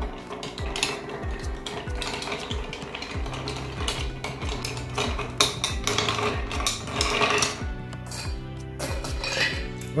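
Bar spoon stirring ice cubes in a glass mixing glass: a steady run of light clinks as the ice turns, stirring the drink to chill and dilute it.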